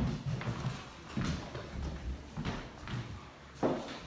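Footsteps walking across a hard floor at about two steps a second, with a louder clack near the end.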